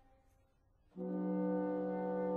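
Chamber orchestra music: a previous sound dies away to near silence, then about a second in a low, brass-like note enters abruptly and is held steady.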